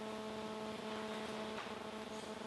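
A steady hum of several held tones over a faint hiss. Most of the tones fade out about one and a half seconds in.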